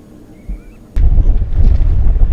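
Wind buffeting the microphone, a loud, gusty low noise that starts suddenly about a second in, after a near-quiet moment.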